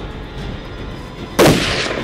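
A single gunshot about one and a half seconds in, loud and sudden, with a short tail dying away over half a second.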